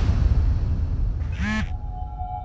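Dramatic background score: a deep low rumble, with a short pitched call about one and a half seconds in and a steady held tone coming in near the end.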